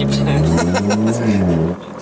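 Car engine heard from inside the cabin under acceleration, its note rising steadily for about a second, then falling away as the throttle eases and dropping out shortly before the end.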